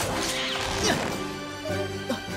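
Cartoon sound effect of a metal grappling anchor clamping into rock: a sharp impact near the start, over background music.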